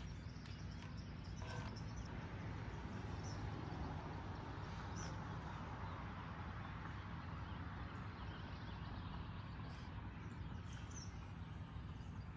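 Faint, steady outdoor background noise with a few faint bird chirps.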